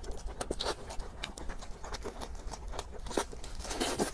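Close-miked chewing of roast pork and lettuce: irregular wet mouth clicks and small crunches.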